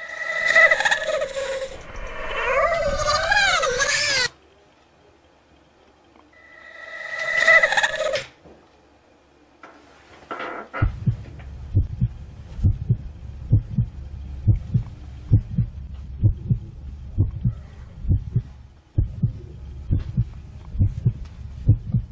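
A high, wavering cry rich in overtones, heard twice: a long one whose pitch warbles near its end, then a shorter rising one. From about halfway through, a long run of low, dull thuds, roughly two to three a second.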